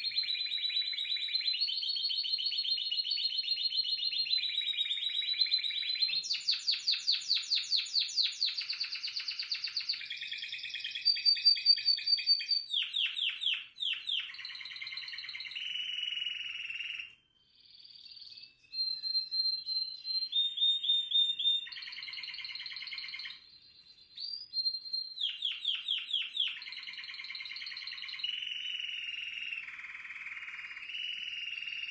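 Spanish Timbrado canary singing a continuous song of changing tours, each lasting one to several seconds. It opens with a long, even metallic roll (timbre metálico) and moves on to floreo: fast-pulsed trills and quick strokes, with two short breaks in the second half.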